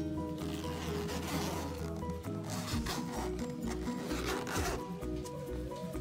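Background music, with the rasp of a soft pet carrier's zipper being pulled in a few strokes.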